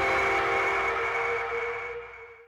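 Closing theme music ending on a held chord that fades out near the end.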